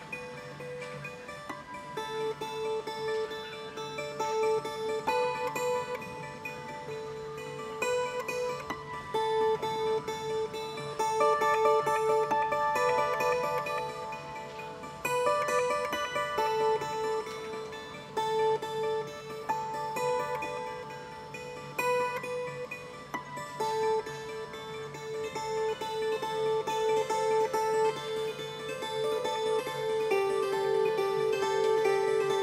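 Solo improvisation on a 15-string Estonian kannel, a plucked board zither: notes plucked one after another and left to ring over each other, growing louder around the middle.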